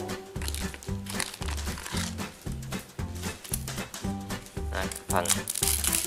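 Background music with a steady beat, over dry crackling and crinkling as a dried kapok pod and its fibre are pulled apart by hand.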